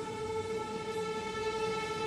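An orchestra holding a sustained chord that slowly swells in volume at the opening of a piece.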